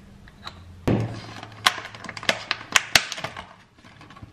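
Kitchen handling noises: a knock on the counter about a second in, then a quick run of sharp clicks and clacks as a syrup bottle is capped and put down and a plastic fruit punnet is handled.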